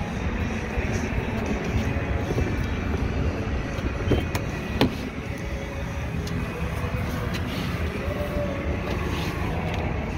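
Front passenger door of a 2020 Infiniti QX60 being opened: two sharp clicks about four and five seconds in, over a steady low outdoor rumble.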